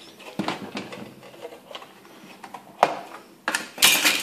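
Handling of an aluminium gauge bar and its loose parts: scattered light clicks and taps, one sharp click a little before three seconds, and a louder metallic clatter near the end as the cover comes off.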